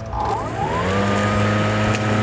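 Cordless battery-powered rotary lawn mower starting: the motor and blade spin up with a rising whine over about the first second, then run on at a steady pitch.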